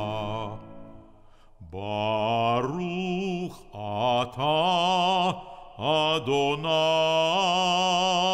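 A solo male voice chanting a Hebrew liturgical blessing, with wide vibrato on the long held notes. A held note dies away in the first second, and after a short breath the chant resumes in phrases broken by brief pauses.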